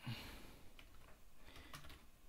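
Faint typing on a computer keyboard: a few separate keystrokes.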